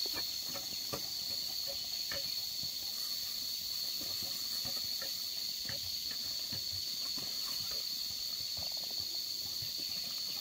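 A steady, high-pitched insect drone, with scattered light taps and crunches of footsteps and a wooden dibbling pole striking dry, burned soil.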